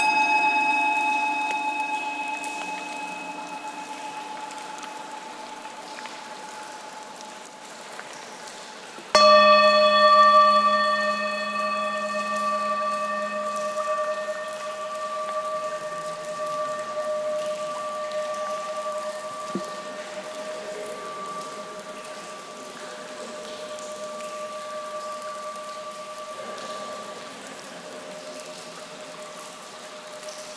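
Antique Himalayan singing bowls struck and left to ring: one strike at the start, a louder one about nine seconds in, each holding a steady ringing tone that slowly fades. Faint cave drips of water sound beneath.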